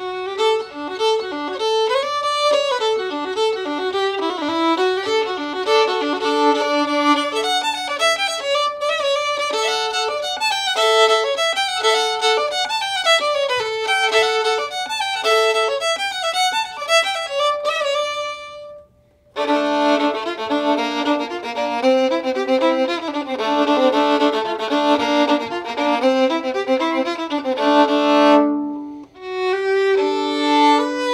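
A Holstein Workshop violin played solo with the bow: a melodic passage of many quick, changing notes. The playing stops for under a second about two-thirds of the way through, then carries on.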